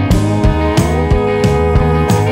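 Background rock music: guitar over a bass line and a steady drum beat.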